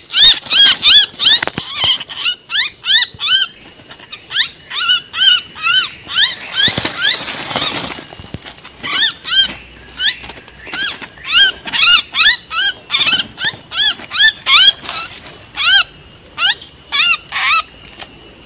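A small bird held in the hand giving loud, shrill calls over and over, each rising and falling in pitch, several a second, with a short lull midway. Behind them runs the steady high drone of cicadas.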